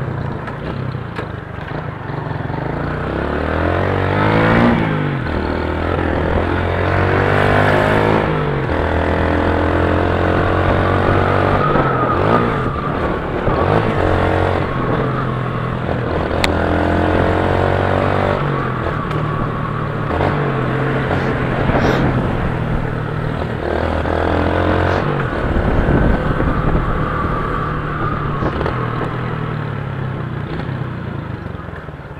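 Motorcycle engine heard from the rider's seat, accelerating and shifting up through the gears several times: the pitch climbs in each gear and drops back at each shift.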